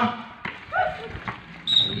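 A lull in the play-by-play with a short call about a third of the way in, then a brief high whistle blast near the end: a referee's whistle stopping play as a violation is called.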